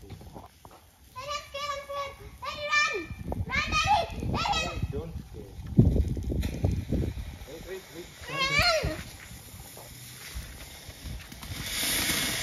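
Children's high-pitched voices calling out in several short bursts, with low rumbling noise in between. A steady hiss builds near the end.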